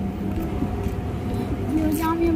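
Low, steady rumble of road traffic close by. Near the end a man hums briefly.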